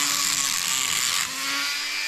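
Dremel rotary tool with a sanding head grinding rust off a car's brake caliper bracket around the slide-pin seat, a high whine. The whine drops away just over a second in.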